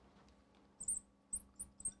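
Marker squeaking on lightboard glass as letters are written, about four short high squeaks in the second half.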